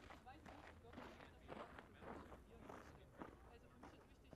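Faint, indistinct voices at a low level, with a few light knocks or steps.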